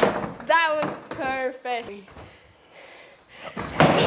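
Skateboard dropping in on a wooden mini ramp: a sharp knock at the start, then, just before the end, a sudden loud thud as the wheels come down on the ramp, followed by the wheels rolling over the wood.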